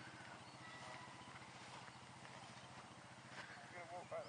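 Near silence: faint outdoor ambience with a low steady hum and a few weak knocks, and a voice starting near the end.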